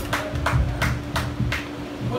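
Live rock band with bass, electric guitar and drum kit playing: evenly spaced cymbal and drum hits about three times a second over one held low note, growing a little quieter toward the end.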